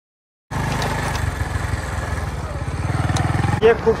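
Motorcycle engine running at a steady road speed while being ridden, with a low, even throb and wind rushing over the microphone. It cuts in after a brief silence about half a second in.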